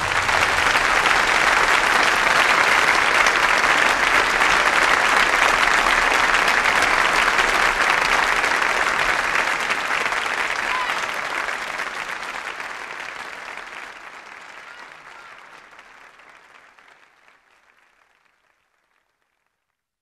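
Audience applauding at the end of a live jazz performance, steady for about ten seconds, then fading away gradually.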